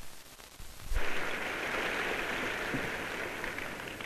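A large hall audience applauding: an even hiss of many hands clapping that starts about a second in and eases off slightly toward the end.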